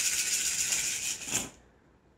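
A handful of cowrie shells rattling as they are shaken quickly in cupped hands, then cast onto a cloth-covered table about a second and a half in, where the rattling stops.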